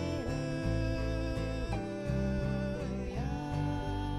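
A live worship band playing a song: acoustic guitar, piano, drums and electric guitar, with voices singing over it.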